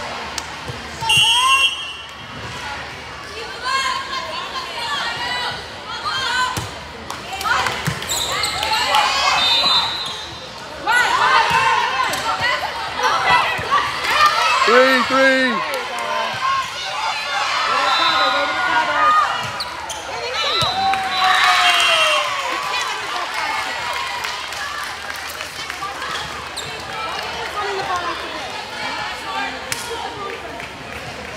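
Indoor volleyball rally: the ball being struck and hitting the hardwood court in sharp knocks, amid players and spectators shouting and calling out, echoing around a large gym.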